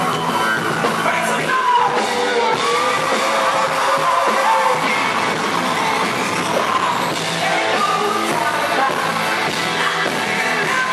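Rock band playing live, with electric guitar, bass and drums under a male lead singer, including a long held sung note through the middle.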